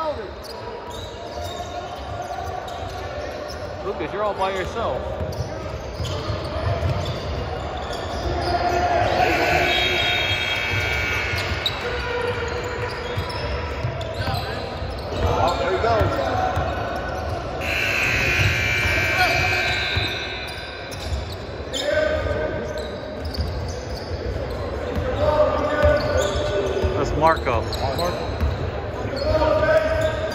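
A basketball bouncing repeatedly on a hardwood gym floor during play, with voices echoing around a large indoor hall.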